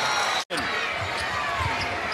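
Arena crowd noise, broken by a brief dropout to silence about half a second in. Then a basketball is dribbled on a hardwood court, a few low bounces under the crowd.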